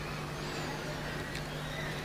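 Steady low hum with a faint even hiss: the background noise of the recording, with no other sound rising out of it.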